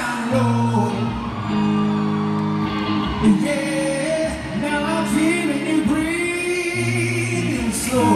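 Live band playing over a loud PA: a male singer holds long, bending notes over electric guitar.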